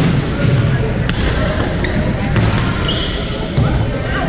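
Badminton play in a large gym: sharp cracks of rackets striking the shuttlecock roughly every second and a quarter, with a brief squeak near the end and background voices echoing in the hall.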